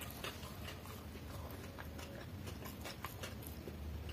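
Close-miked chewing of a mouthful of food: irregular soft wet clicks and smacks from the mouth, over a steady low hum.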